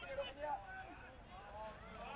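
Faint distant voices, short calls with shifting pitch, over low open-air ambience at a soccer match.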